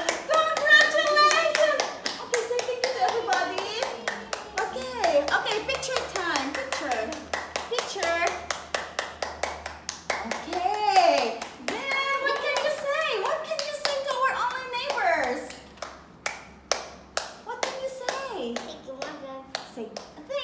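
Hands clapping steadily, several claps a second, with voices over it.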